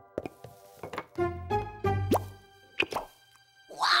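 Cartoon pop and plop sound effects, a string of quick pops with short rising whistle-like glides, as berries are plucked from a magic berry bush that grows new ones, over light background music.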